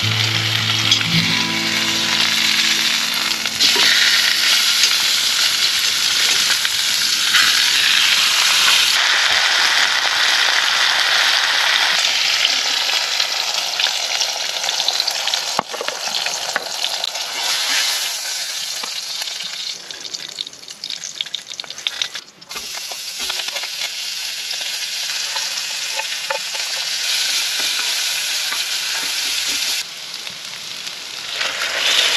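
Meat searing in a hot pan, a loud steady sizzle. About two-thirds through it drops away after a short break, and a softer sizzle of frying goes on. Background music fades out in the first few seconds.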